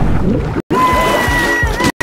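Cartoon soundtrack music over a rumbling water effect. A high held note enters about two-thirds of a second in, and the sound cuts out completely for an instant twice.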